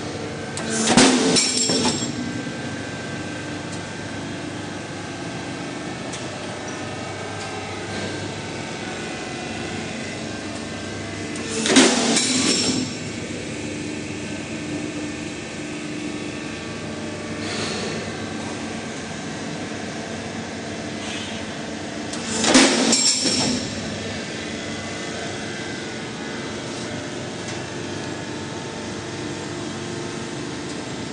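Roll forming machine running steadily as a steel profile feeds through its forming rollers, with a continuous hum. Three louder, harsher noises about a second long break in at roughly eleven-second intervals, the first about a second in, with a fainter one between the second and third.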